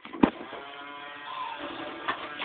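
A sharp click, then a battery-powered electronic toy playing a steady musical tune.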